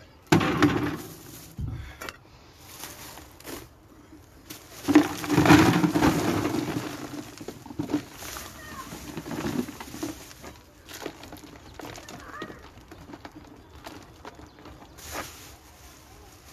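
Potting soil being tipped and crumbled by hand from a black plastic bag into a white plastic tub, with the bag rustling. The handling comes in irregular bursts, loudest about five seconds in.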